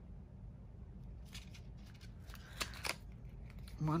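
Paper pages of a small handmade journal rustling and a needle and thread scratching through punched holes as a signature is hand-sewn: a few short, scratchy sounds between about one and three seconds in, over a faint low hum.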